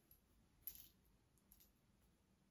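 Near silence: room tone, with one faint short click a little under a second in and a fainter tick later.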